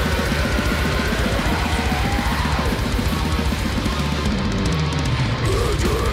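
Death metal band playing: fast, dense drumming under heavy distorted guitars, with a guitar line weaving above.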